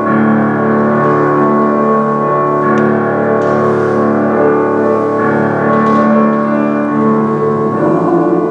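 Slow keyboard music: held chords that change a few times, with little decay between changes.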